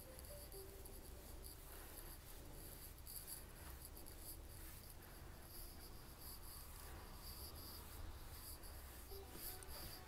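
Faint, soft swishing of a flat bristle brush dry-brushing acrylic paint across a painted plaque, over a low steady room hum.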